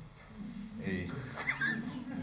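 A single spoken word in a quiet room, followed by a short high-pitched gliding sound about a second and a half in.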